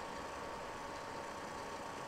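Steady low hiss of background noise with a faint hum.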